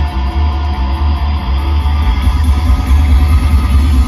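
Live rock band playing through a large outdoor PA, with electric guitars and drums over a heavy, dominant bass, heard from in the audience.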